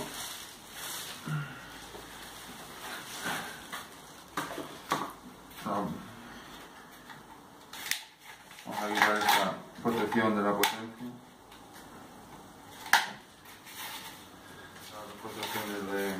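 Hands handling a new mountain bike's handlebar and its plastic packaging, with a few sharp clicks of parts being fitted. A man's low voice is heard briefly in the middle and again near the end.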